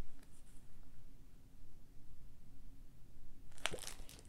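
Cross-stitch pattern sheets in plastic sleeves being handled and shuffled, faint rustling over a low room hum, with a short sharp crinkle near the end.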